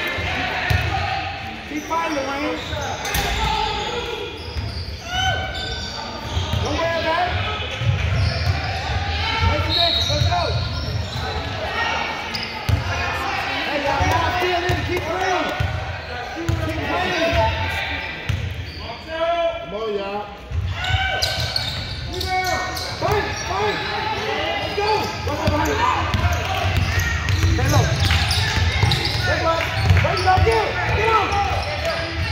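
Basketball bouncing on a hardwood gym floor, with voices echoing in a large gymnasium.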